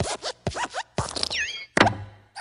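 Cartoon sound effects of the Luxo Jr. desk lamp in the Pixar logo, hopping on the letter I: a quick run of short springy squeaks and thumps as the lamp squashes the letter, with the loudest thump near the end.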